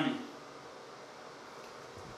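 The end of a man's spoken word, then quiet small-room tone: a faint, steady hiss with no distinct events.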